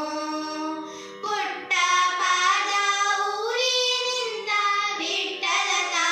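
Two girls singing a devotional song together, held phrases bending in pitch, with a brief pause about a second in. Steady drone tones run underneath.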